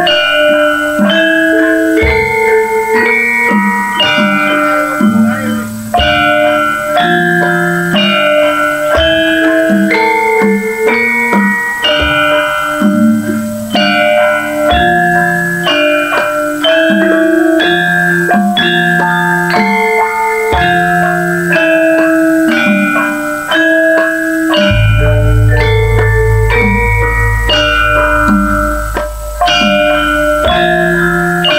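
Javanese gamelan ensemble playing: bronze metallophones strike a steady run of notes over the drums. A deep, long-held low tone comes in near the end.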